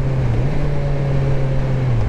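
2019 Kawasaki Z900's inline-four engine running at steady cruising revs under way, over wind rush. The engine note dips briefly and picks back up about half a second in.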